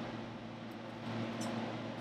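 Quiet room tone with a faint steady hum and no distinct event.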